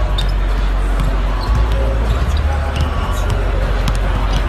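Basketball arena ambience during warm-ups: basketballs bouncing on the hardwood court in scattered sharp knocks, over voices and a steady deep bass from the arena music.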